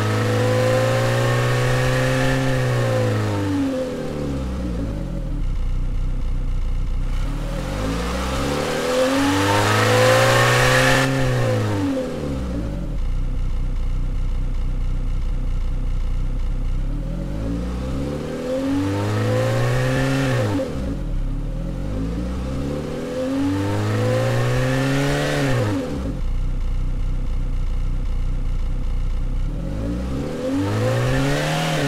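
Synthesized car engine from the AudioMotors plug-in, revving as if in neutral: the pitch climbs and falls back about four times, settling to a low idle between revs, and a fifth rev starts near the end.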